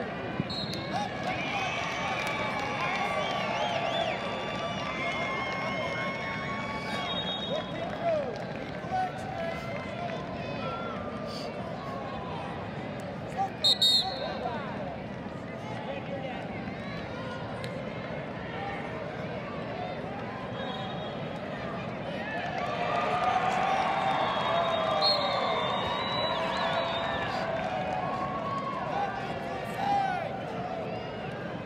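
Arena crowd and mat-side coaches shouting and cheering during a wrestling match, many voices overlapping, swelling louder a little past two-thirds of the way through. A brief, loud high-pitched sound cuts in about halfway.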